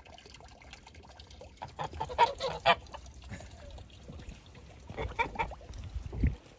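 Domestic geese honking in two bouts of quick repeated calls, one about two seconds in and a shorter one near the end.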